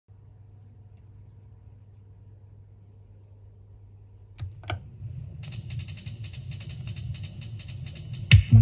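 Vinyl record on a turntable: a steady low hum at first, then two sharp clicks about four and a half seconds in as the stylus meets the groove, followed by the quiet opening of a reggae version side, a steady rhythmic hi-hat-like percussion pattern.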